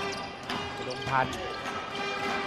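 Basketball dribbled on a hardwood court, a few sharp bounces about half a second apart, over steady arena music.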